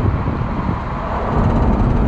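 Road and engine noise of a Tracker compact SUV being driven, heard from inside the cabin: a steady low rumble, with a faint engine hum that comes in about halfway through.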